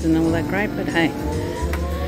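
Poker-machine room sounds: electronic machine tones, one rising slowly through the second half, over background voices and a steady low hum.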